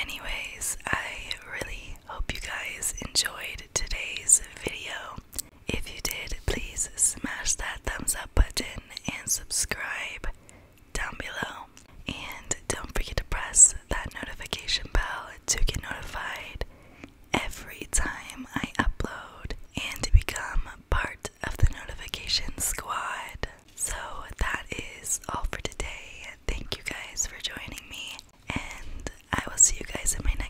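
Whispered speech close to a microphone, with small clicks between the words.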